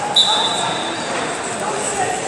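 Background voices and murmur in a large sports hall during a wrestling bout. A short knock and a brief high-pitched squeak come near the start.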